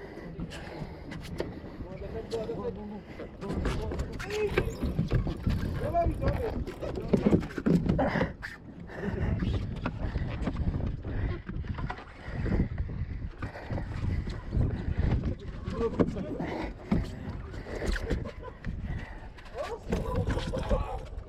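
Indistinct voice sounds without clear words over the steady rumble of sea and boat noise. Scattered sharp knocks run throughout as the rod and reel are worked against a hooked fish.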